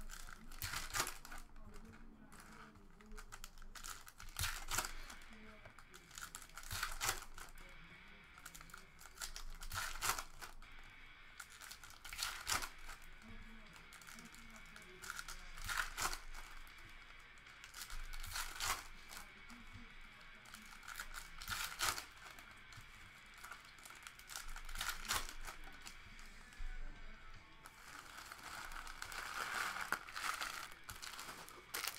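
Foil trading-card pack wrappers and cards being handled: continuous crinkling and rustling, with a sharp crackle about every two to three seconds.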